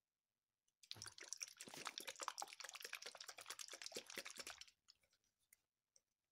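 Liquid sloshing and rattling in a small plastic toy baby bottle shaken hard by hand, mixing the doll's juice. It starts about a second in and goes on for about four seconds before stopping.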